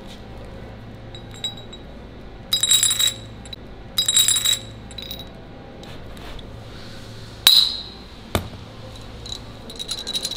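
Hardened steel bearing balls and metal bearing parts clinking together in gloved hands as a ball bearing is assembled into a pulley. Two short rattly bursts of bright chinking come first. Past the middle there is a single sharp metallic click with a ringing tone, then a dull knock, all over a steady low hum.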